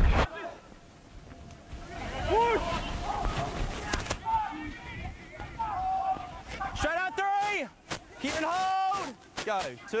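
Men shouting on a rugby league field: a short shout about two and a half seconds in, then several long, loud calls near the end, with scattered knocks between.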